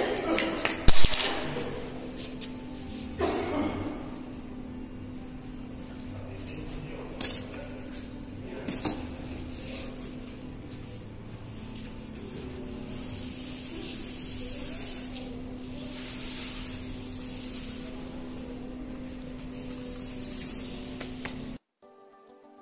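Wet cement grout being spread across glossy porcelain floor tiles with a long-handled rubber squeegee, heard as soft wet scraping and swishing strokes. A few knocks come in the first seconds, the loudest about a second in, and a steady low hum runs underneath.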